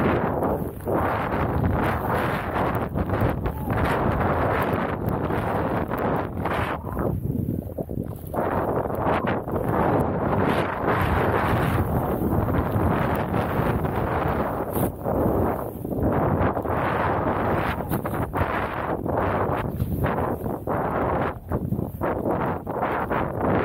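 Wind buffeting the microphone of a handheld action camera, mixed with a snowboard rushing through deep powder snow: a loud, uneven noise that surges and dips every second or two with the turns.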